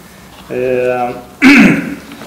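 A man's held, hesitating 'eh', then a short, loud clearing of the throat about one and a half seconds in.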